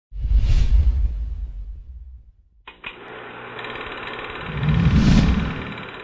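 Intro sound effects: a low whooshing boom at the start that fades away, then a steady mechanical buzz from a little before the halfway point, with a second low whoosh swelling and falling near the end.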